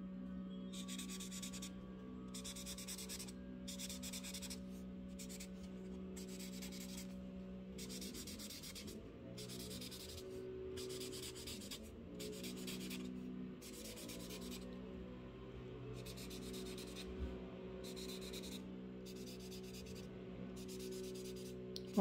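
Felt-tip Imagine Ink marker rubbing back and forth on paper as small spaces are coloured in. The scratchy strokes come in short bursts of under a second, roughly one a second.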